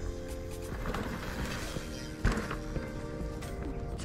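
Background music with steady held tones, and a single thump a little over two seconds in.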